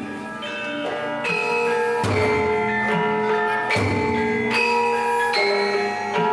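Javanese gamelan playing: bronze metallophones and gongs struck in a slow, ringing melody. The music swells about two seconds in, with a deep stroke roughly every one and a half to two seconds.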